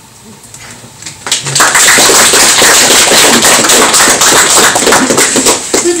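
Audience applauding: a dense run of hand claps that starts about a second in and stops just before the end.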